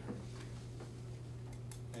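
Room tone with a steady low hum and a few quick ticks in the last half second.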